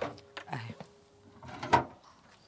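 A few light clicks and knocks, then a refrigerator door pulled open near the end.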